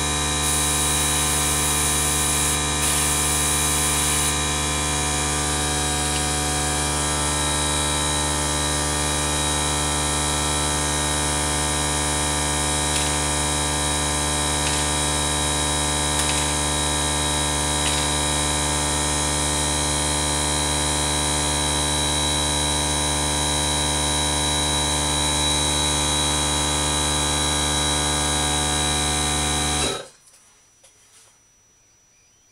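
Airbrush compressor running with a steady, even hum. Two short hisses of airbrush spray come in the first few seconds, and the hum cuts off suddenly at the end.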